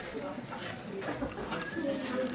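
Faint, indistinct background voices with no clear words.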